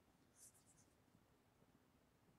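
Near silence: faint room tone in a pause on a video call.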